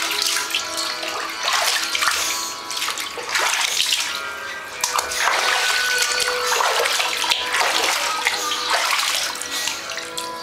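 Water running and splashing in a bathtub as a small dog is washed. The sound swells and eases every second or so.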